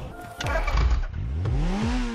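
High-revving sport motorcycle engine revving: a falling sweep in pitch at the start, then a steep climb in pitch through the second half.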